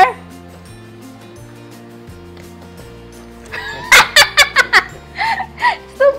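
Quiet background music with steady notes, then a burst of high-pitched giggling about three and a half seconds in, lasting around two seconds.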